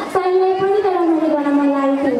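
A woman singing a Nepali teej song, holding one long note that slowly falls in pitch.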